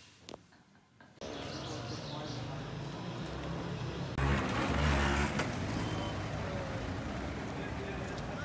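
Quiet room tone, then from about a second in busy street noise of passing cars and motorbikes with voices in the background. A louder rumble comes about four seconds in and lasts about a second.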